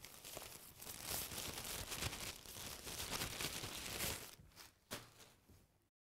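Plastic wrapping crinkling and rustling as it is handled, with many small crackles, stopping about four seconds in; a single click follows shortly after.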